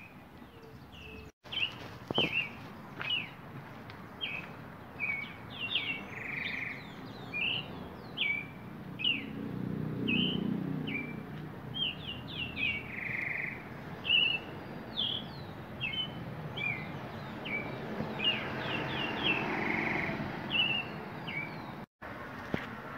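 Small birds chirping in the trees: short, high notes, many falling in pitch, repeating about once or twice a second. A low rush of background noise swells under them in the middle and again near the end.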